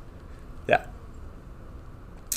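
A single short spoken "yeah" from a man, a clipped syllable about 0.7 seconds in; the rest is quiet room tone with a low hum.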